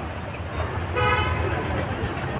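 A brief, steady horn toot about a second in, lasting under half a second, over a steady low hum.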